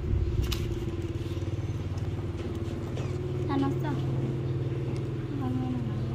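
A small engine running steadily with a low, even hum, with short voice sounds about halfway through and again near the end.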